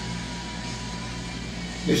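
Steady low hum of room background with a faint, steady high tone underneath.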